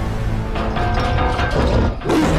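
Film trailer soundtrack: dramatic music under rapid metallic clicking and creaking sound effects that build up, then drop away suddenly at the end.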